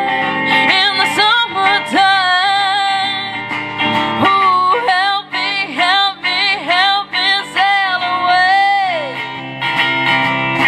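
A woman singing live into a microphone over her own guitar accompaniment. A long held note near the end falls away in pitch.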